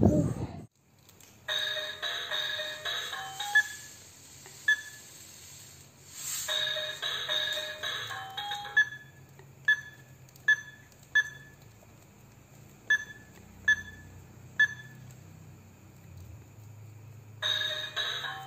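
A simple electronic tune of clean beeping notes in short stepped phrases, then single beeps at one pitch about a second apart, and the tune again near the end. A brief loud sound cuts off about half a second in.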